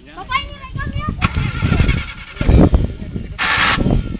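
Small off-road 4x4's engine running as the vehicle crawls up a rutted dirt track, with a sharp knock about a second in, a louder surge midway and a short burst of hiss near the end.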